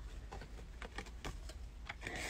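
A few faint, irregular light clicks from a wig's paper tag and scissors being handled after the tag is snipped off.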